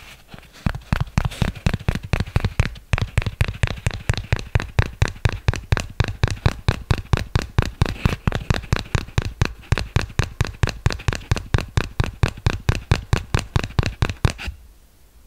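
Fingertips tapping a small hand-held object held right against a condenser microphone, in a fast, even rhythm of about four to five sharp taps a second. Each tap has a deep close-mic thump under a crisp click.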